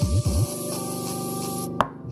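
JBL Charge 3 Bluetooth speaker at full volume playing a bass test track: deep bass sweeps dip and rise over steady electronic tones. The music cuts out abruptly near the end with a sharp click.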